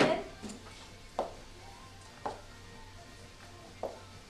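A few light, sharp clicks and taps, spaced about a second apart, from hair being handled and sectioned with a clip, over a steady low hum.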